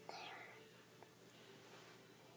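Near silence: a faint whispered voice trailing off at the start, and a small click about a second in.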